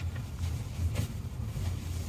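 Low, steady rumble of a double-decker coach's engine and running gear heard inside the cabin as it rolls slowly, with a light click about a second in.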